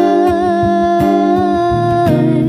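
A woman's voice holding one long sung vowel with a slight waver in pitch, accompanied by an acoustic guitar.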